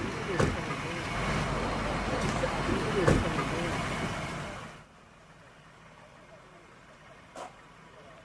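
Toyota minibus pulling up at the curb: steady engine and road noise with a couple of brief voices, which drops off abruptly to a much quieter stretch about five seconds in.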